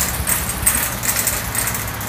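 A steady low hum, with scattered light clicks and rustles of the phone being carried while walking.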